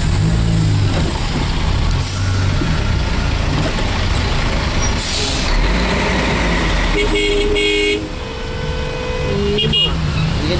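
Vehicle engine running in stopped traffic, heard from inside the cab, with a short hiss about halfway through. Car horns honk near the end: a two-note horn for about a second, then a single higher horn note held for about a second and a half.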